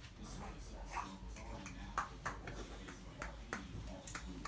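A handful of light, scattered taps and knocks, as of a toddler handling toy blocks on the floor.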